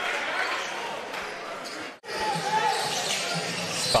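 Basketball bouncing on a hardwood court in a large indoor hall, with the hall's murmur behind it. The sound drops out for an instant about halfway through.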